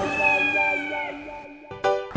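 The closing notes of a children's TV show theme jingle, ending on one long, slightly falling high note as the music fades out.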